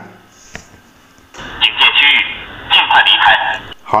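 Hikvision full-colour alarm camera's built-in speaker playing a recorded voice warning, set off by its vehicle-leaving-area detection as a car drives out of the zone. The voice sounds thin and phone-like, in two phrases starting about a second and a half in.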